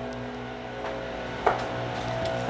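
Leaf blowers running, a steady drone, with one brief short sound about one and a half seconds in.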